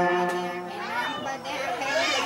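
A Buddhist Pali blessing chant holds a steady note and breaks off less than a second in. In the pause, voices, among them a child's, rise and fall.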